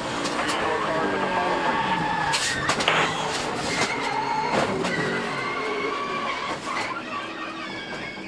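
Onboard sound of a NASCAR stock car crashing: the engine note drops as the car is turned sideways, then a hard hit against the wall about two and a half to three seconds in, followed by the car's noise as it slides on.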